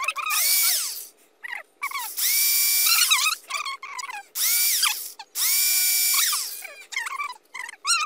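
Corded electric impact drill boring holes in a plastic bottle, run in repeated bursts on the trigger: the motor whine rises as it spins up, holds steady, and falls away on release, three longer runs with several short blips between them.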